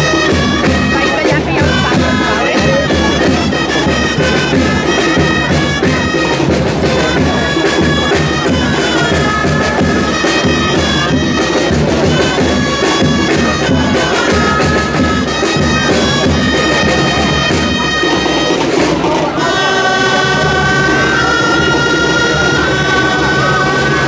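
Traditional folk dance music led by a loud, reedy wind-instrument melody over a steady low drum beat; about three quarters of the way through, the melody changes to longer held notes.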